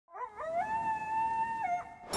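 A coyote howling: a couple of short rising yips, then one long held note that drops away near the end.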